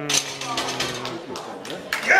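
A man's voice holds one long shout at a steady pitch, fading out after about a second and a half. Sharp metallic knocks follow as the loaded barbell is set back into the bench press uprights at the end of the lift.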